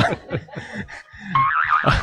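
People laughing and chuckling in short syllables, with a high, warbling laugh near the end.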